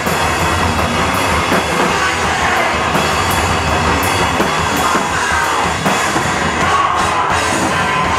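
Live rock band playing loud and dense: a drum kit with regular cymbal hits over electric guitar.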